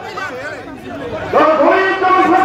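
A man's voice chanting a long, drawn-out slogan, coming in loud about a second and a half in, after a stretch of quieter voices.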